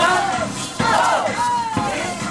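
A group of elderly people shouting together in unison, with a fresh shout about a second in, over a few short percussion knocks.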